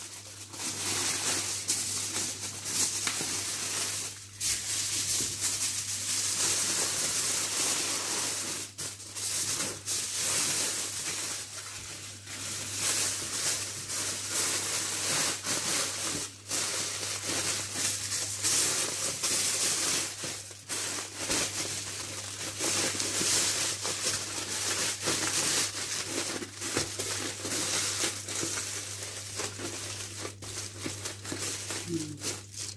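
Aluminium foil crinkling and crumpling, on and off, as it is folded and pressed by hand around a parcel wrapped in large leaves. A faint steady low hum runs underneath.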